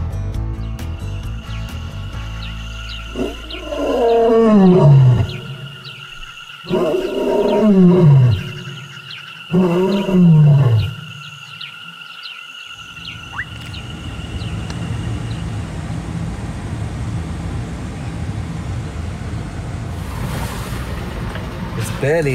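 A lion roaring: three long, loud calls, each sliding down in pitch, spaced a second or two apart, over a steady high tone. Background music ends in the first couple of seconds, and a steady hiss follows the calls.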